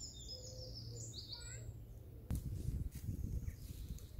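Small songbirds singing in woodland, quick repeated high chirping phrases in the first second and a half. A low rumble of outdoor noise follows from about two seconds in, with a faint click at its start.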